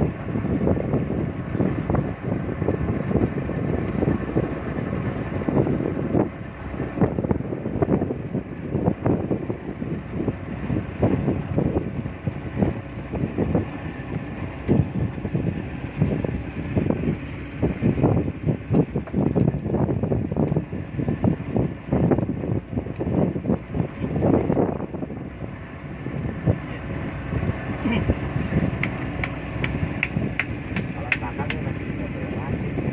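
Speedboat under way: its outboard motor running under a constant, irregular buffeting of wind on the microphone.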